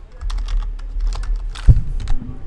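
Keystrokes on a computer keyboard, quick irregular taps as a command is typed, with one louder keystroke near the end.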